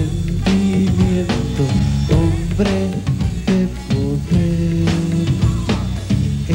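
Live rock band playing: electric guitars and bass over a drum kit keeping a steady beat.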